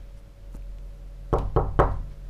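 Three quick knocks of a fist on a wooden door, in the second half.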